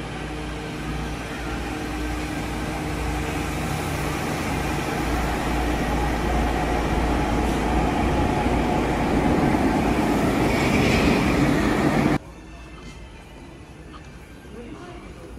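Nanakuma Line linear-motor subway train running alongside the platform, its running noise and motor hum growing steadily louder. About twelve seconds in it cuts off abruptly to a much quieter station hum.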